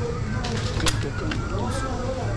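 Indistinct background chatter of shoppers in a supermarket over a steady low hum, with one sharp click a little before the middle.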